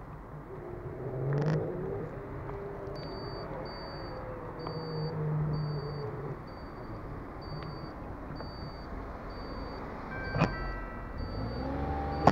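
Car engine running slowly in traffic, heard from inside the car, with the turn indicator ticking evenly about once every three-quarters of a second from a few seconds in. A sharp click with a brief beep comes near the end.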